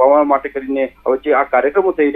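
Speech only: a man talking continuously. The voice is narrow and phone-like, with nothing above the upper midrange.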